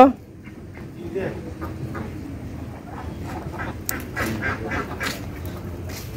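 Domestic ducks quacking: short, scattered calls with faint voices behind them.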